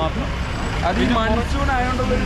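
Men talking over the low, steady running of a nearby motor vehicle's engine in street traffic.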